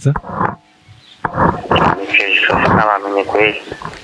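Speech only: a voice on a phone call, its phone held up beside a microphone, talking in short phrases after a pause of under a second near the start.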